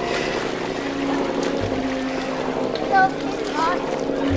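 Seaside ambience: background voices of swimmers over a steady low hum, with a few short high-pitched calls near the end.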